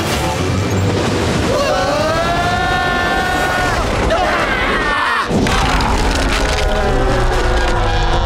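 Cartoon action soundtrack: dramatic music under booming impact effects, with a long held yell about one and a half to four seconds in.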